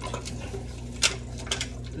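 A few light clicks and taps of kitchenware being handled, the clearest about halfway through, over a steady low hum.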